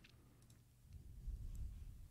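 A few faint computer mouse clicks, with a low rumble near the middle.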